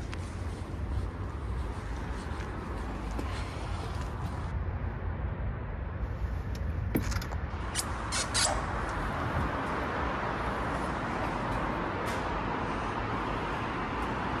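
Steady city road traffic noise with a low rumble. A few sharp clicks come about seven to eight and a half seconds in.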